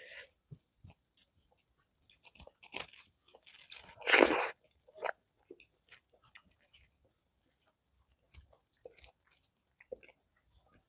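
Close-miked chewing of rice and fried egg, with scattered short wet mouth clicks and one louder, longer sound about four seconds in; the sounds thin out after about six seconds.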